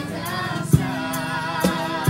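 A group of voices singing a harana serenade in chorus, with held, wavering notes, over instrumental accompaniment that has a sharp beat about once a second.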